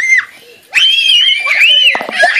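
Young children screaming in play: a brief high scream at the start, then a long high-pitched scream about three-quarters of a second in and a shorter one just after it.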